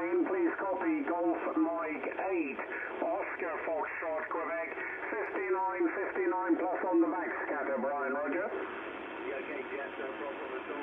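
A single-sideband amateur-radio voice transmission on the 20-metre band, heard through a Yaesu FRG-7700 communications receiver's speaker, thin and narrow-band. About eight and a half seconds in, the voice stops and steady band noise hiss is left.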